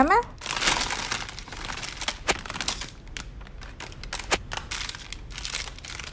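Plastic-wrapped gummy candy packets being tipped out of a large plastic bag onto a table: a dense rush of crinkling about half a second in, then scattered crinkles and a few light ticks as the packets are spread out by hand.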